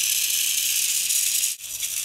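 Small toy electric motor and plastic gearbox of a snap-together solar rover whirring steadily once its rechargeable battery is attached, a thin high-pitched buzz with a light rattle. The sound breaks off briefly near the end.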